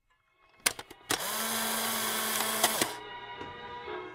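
A small electric motor buzzing loudly for under two seconds, starting and stopping abruptly, with a few clicks just before it.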